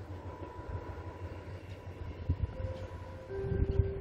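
Mugunghwa-ho passenger train approaching in the distance, an uneven low rumble with a faint steady tone, a clearer steady tone coming in near the end.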